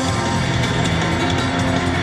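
Loud live punk-rock band playing: electric guitar and bass over a steady, driving drum beat, heard from the seats of a large arena.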